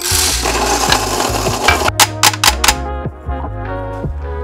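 An electric burr coffee grinder runs for about two seconds and stops abruptly, followed by four quick sharp taps, over background music with a steady bass line.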